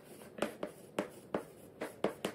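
Chalk writing on a blackboard: about five short strokes as a word is written out.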